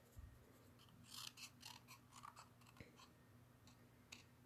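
Very faint snips and paper rustling from small scissors cutting a scrap of white paper, a few short sounds clustered about a second in, then a single light click.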